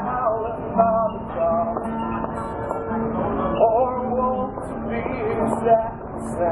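Male voice singing live over a strummed acoustic guitar, with long, wavering sung notes over steady chords.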